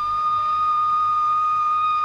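Background film score: one high, flute-like note held steadily, having slid up into pitch just before.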